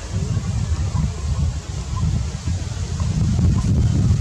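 Wind buffeting the microphone outdoors: a low rumble that rises and falls.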